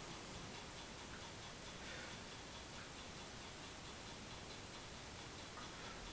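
Faint room tone with a light, even ticking running through it.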